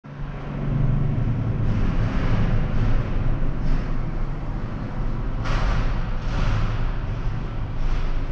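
A steady low mechanical drone with a constant hum, under a noisy hiss. Two louder rustling swells come about five and a half and six and a half seconds in.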